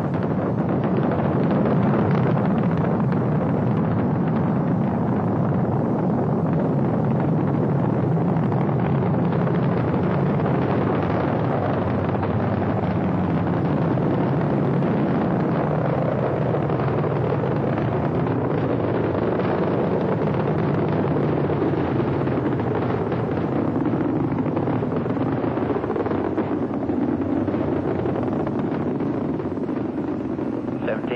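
Saturn V rocket at liftoff and climb-out, its five F-1 first-stage engines making a loud, continuous rumbling noise that holds steady without a break.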